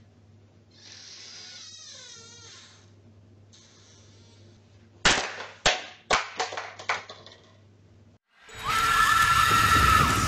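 A quick run of sharp knocks and clattering, the loudest first, as an under-counter fridge door swings open, over a low steady hum from the security camera's audio. About a second and a half before the end, loud intro music starts.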